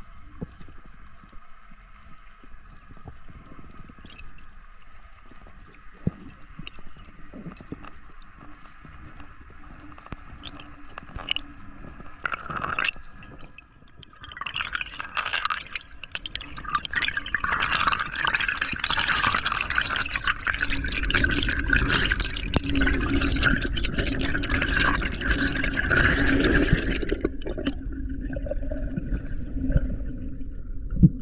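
Underwater water noise picked up through a diving camera's housing: a faint gurgling hiss with scattered clicks, becoming a much louder rushing of water about halfway through that eases off near the end.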